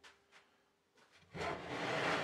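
Pieces of cut oak slid across a plywood sheet: a scraping noise that sets in about two-thirds of the way through and keeps going, after a couple of faint knocks.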